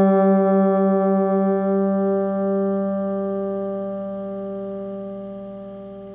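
Electric guitar ringing on a G: the D string fretted at the 5th fret and the open G string sounding together. The pulsing between the two slows and fades out by about halfway through as the G string's tuning peg is turned to match, the sign of the two strings coming into tune. The notes die away slowly.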